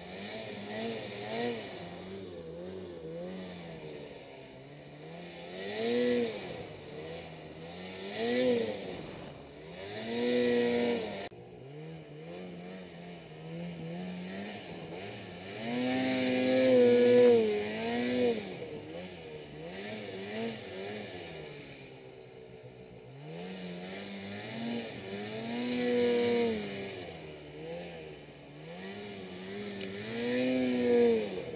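A 2008 Ski-Doo Summit XP snowmobile's two-stroke engine, heard from the rider's seat, revving in about six bursts as it pushes through deep powder snow. The pitch climbs and falls with each burst, longest and loudest midway, and settles to a lower steady drone in between.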